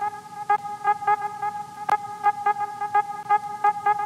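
Background music: a held synth chord with short notes repeating in a steady rhythm.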